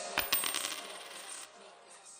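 A short metallic jingle: a few quick clicks with a high ringing that fades out by about a second and a half in.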